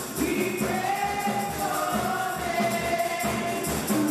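A group of women singing gospel into microphones over amplified music with a steady beat, their voices holding long notes that glide in pitch.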